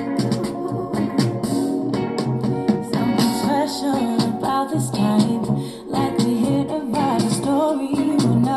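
A song with a woman singing over guitar and keyboard accompaniment, played through Logitech Z150 2.0 desktop speakers and picked up in the room.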